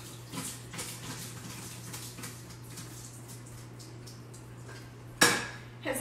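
Faint clinks and knocks of kitchen utensils and dishes being rummaged through, then one sharp, loud clack about five seconds in.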